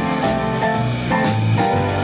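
A live swing band plays jazz dance music, with a steady beat of drums about twice a second.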